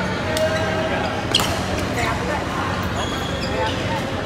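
Badminton rally: sharp racket hits on the shuttlecock, the loudest about a third of the way in, over a steady low hum and background voices in a large hall.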